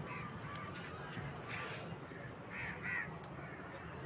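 Faint bird calls: several short calls over low background noise.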